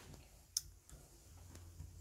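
One sharp click about half a second in, against a faint low room hum: handling noise from the handheld phone being moved.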